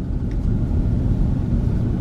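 Low, steady rumble of a car's engine and tyres heard from inside the cabin while driving slowly.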